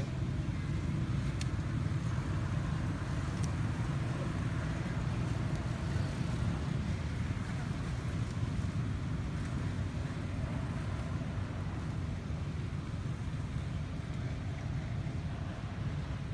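Steady low rumbling background noise, even throughout, with no distinct calls or knocks standing out.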